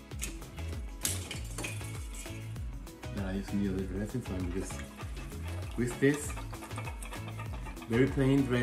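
A wire whisk stirring and clinking against a stainless steel mixing bowl as an oil-and-vinegar dressing is beaten, with sharp clicks and a louder clink about six seconds in. Background music plays throughout.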